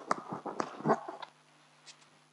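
Rustling, clicking handling noise close to the microphone, as of hands and clothing at the wearer's chest. It comes in a cluster of short knocks over the first second and then dies away, leaving a low electrical hum.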